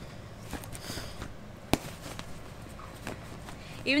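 Handling noise from a fabric diaper bag and its organizer insert being moved about: a few light clicks and knocks, with one sharper click a little under halfway through.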